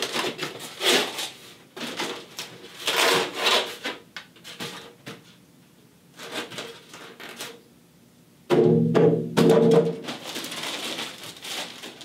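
Foam packing being pulled out of a cardboard box, rubbing and scraping against it in several bursts, with a loud squeaking stretch about two-thirds of the way through.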